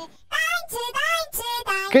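A high-pitched, child-like voice singing a short phrase with gliding pitch, starting a moment after a brief lull.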